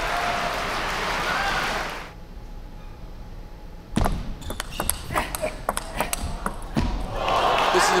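Crowd noise with voices, then a table tennis rally: the celluloid ball clicking off bats and table in quick succession for about three seconds, followed by the crowd noise rising again as the point ends.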